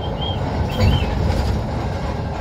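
Steady low engine and road rumble heard from inside the cab of a moving intercity bus, swelling briefly about a second in.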